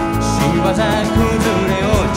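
Live pop-rock band playing a song, with a strummed acoustic guitar, keyboards, electric guitar and drums, and a male voice singing the melody from about half a second in.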